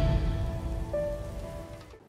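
Fading tail of a channel logo intro sting: a wash of noise with a few held musical notes, dying away steadily to almost nothing.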